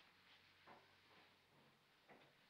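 Near silence: faint steady hum and hiss of an old film soundtrack, with one faint short sound about two-thirds of a second in.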